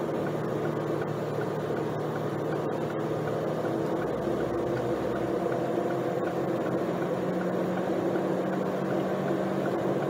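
Steady engine hum and tyre noise heard from inside a car's cabin while cruising at a constant speed, with a few faint clicks early on.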